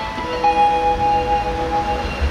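Live rock band's clean electric guitar, over bass, letting a few sustained notes ring out in a sparse, quiet passage of the song, with no drums or vocals.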